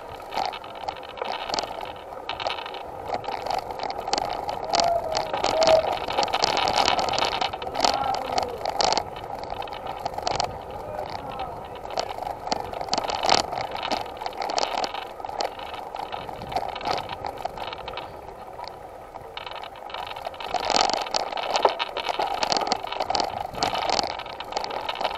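Bicycle rattling as it is ridden along a rough, uneven path, with a continuous rush of tyre and wind noise and frequent small knocks.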